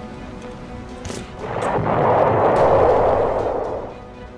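Battle sound effect over background music: a rushing blast swells up about a second and a half in, holds for about two seconds and fades out near the end, with a few sharp cracks.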